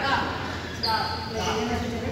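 Badminton rackets striking a shuttlecock, a couple of sharp knocks, one near the start and one about a second in, over people talking. A short high squeak, typical of a court shoe on the floor, comes about a second in.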